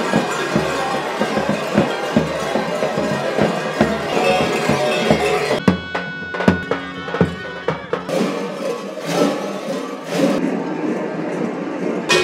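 Traditional Balkan festival music played on a large double-headed tapan drum and a shawm, amid the clanging of the masquerade dancers' large costume bells. About halfway through the shawm's steady reedy tone comes in over the drum strokes.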